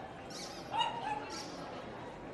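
A dog giving three short, high yips in quick succession, the middle one the loudest.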